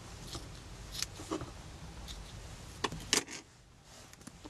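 Small scissors snipping through loose gauze mesh a few times, each a short sharp click, then a louder metallic clack near the end as the scissors are put down on the cutting mat.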